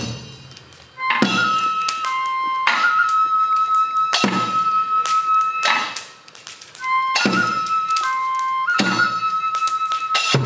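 Tsugaru kagura accompaniment: a bamboo flute holds long notes while a metallic percussion instrument is struck about every second and a half, each strike ringing on. A deep drum stroke falls at the very start and another just after the end.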